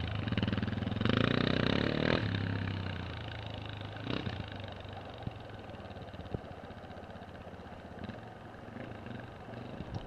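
Trials motorcycle engine revving up loudly about a second in, then running more quietly and fading as the bike rides away.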